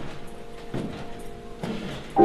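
Footsteps climbing wooden stairs, about one step a second, over background music with long held notes.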